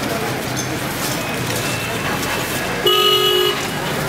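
A vehicle horn honks once for about half a second near the end, over a steady background of crowd chatter and street noise.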